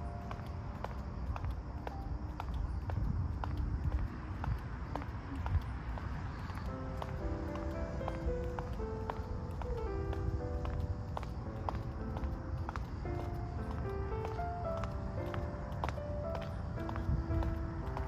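Background music: a light melody of short stepped notes over a steady low rumble.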